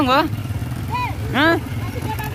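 A steady low engine hum from the moving tractor and motorcycles, with short high-pitched vocal cries over it: one at the start, a brief one about a second in, and a rising-then-falling one about a second and a half in.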